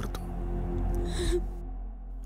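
A crying woman's gasping breath about a second in, over a held note of dramatic background music with a low drone beneath.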